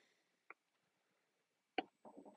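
Near silence while the power button of a 12 V compressor fridge is held down, broken by one short, sharp click near the end as the fridge switches on.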